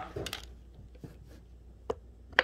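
Faint handling of a steel airbag module and its mounting hardware, light metal clinks, with one sharp click near the end over a steady low hum.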